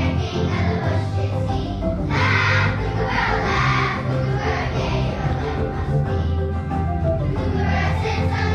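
Children's choir singing together with instrumental accompaniment under the voices.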